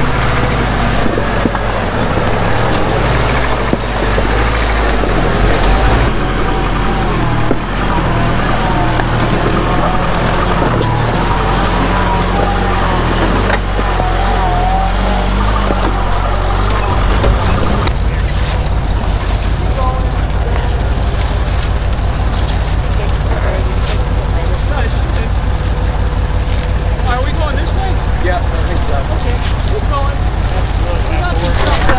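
Jeep engine running at low speed as the Jeep crawls over a rocky trail, with voices over it. About seventeen seconds in, the sound changes to an engine with a steady, even low pulse.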